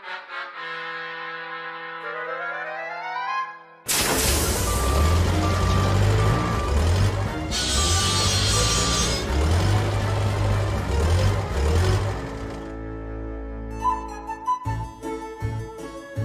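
Orchestral cartoon score with rising brass glides. About four seconds in, the loud noisy rumble of a vehicle's motor cuts in over the music and runs until about twelve seconds, with a hiss swelling briefly near the middle. The music then goes on alone, ending in short staccato notes.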